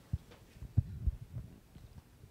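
Scattered dull low thuds over faint room noise, the clearest just after the start and near the middle.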